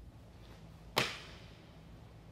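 Shoes landing a forward broad jump on rubber gym flooring: one sharp smack about a second in, fading quickly.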